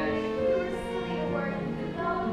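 Live musical-theatre band playing an accompaniment of held, sustained chords.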